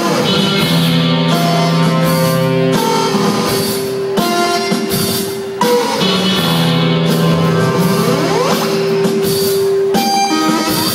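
A rock band playing live: electric guitar and drums with long held notes. A rising pitch glide comes about eight seconds in.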